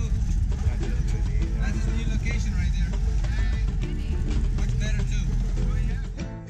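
A car running along a road: a steady low rumble of engine and road noise, with music and a voice playing over it.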